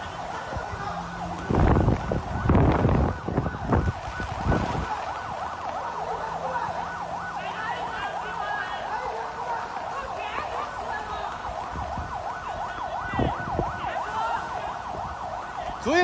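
Several emergency-vehicle sirens wailing at once, their rising and falling tones overlapping throughout. A few loud, rough bursts of noise break in during the first five seconds.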